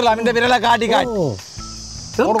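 A man's voice, drawn out, sliding down in pitch and trailing off a little over a second in, followed by a quieter low hum under a steady high hiss.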